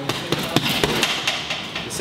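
Boxing gloves striking a heavy punching bag in a fast four-punch combination within about a second: one-two, a hook, then an uppercut to the body, the last punch the hardest.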